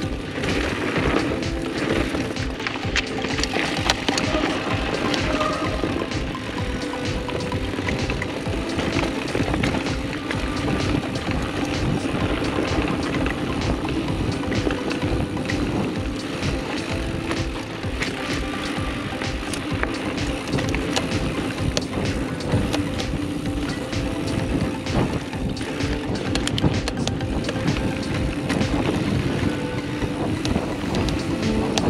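Mountain bike rolling fast down dry dirt singletrack: steady tyre noise on the dirt, with rattling clicks from the bike over bumps and wind on the microphone.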